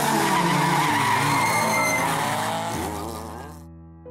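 Honda Civic rally car running hard, its engine note rising and falling with tyres squealing on tarmac. The sound fades and cuts off near the end as piano music comes in.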